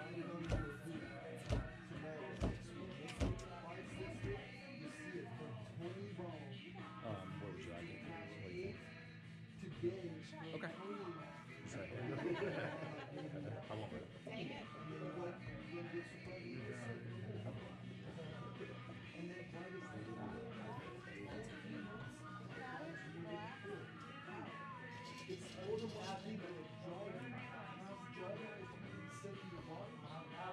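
Background music and room chatter on a steady low hum, with a quick run of sharp knocks in the first few seconds: the foosball ball striking the men and the table walls during play.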